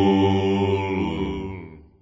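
The final held chord of a melodic death metal song, ringing on as one sustained chord and fading away to silence near the end.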